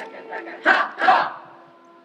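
A group of performers' voices calls out in two loud short bursts about half a second apart, over a faint held note. Then the sound dies away.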